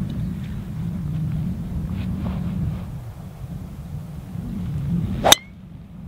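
A driver's clubhead striking a golf ball off the tee: one sharp crack about five seconds in, the loudest moment, over a low wind rumble on the microphone.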